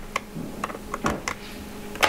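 Light, irregular clicks and ticks of a small pentalobe screwdriver working the screws of a MacBook Air's aluminium bottom case as they are snugged up.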